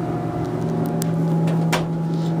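Steady hum inside an Otis Series 1 elevator car: a low, even drone with a fainter higher tone over it, and two light clicks, one about a second in and one near the end.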